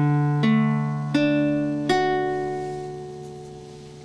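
A D major chord on a nylon-string classical guitar, played as a slow arpeggio: the strings are plucked one after another from low to high, about three-quarters of a second apart, and left ringing together as the chord fades.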